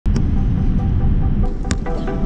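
Steady low rumble of jet airliner cabin noise heard from inside at a window seat, with a few short clicks. Music notes begin to come in near the end.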